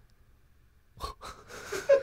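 A person's short, breathy bursts of laughter, starting about a second in after a near-silent pause.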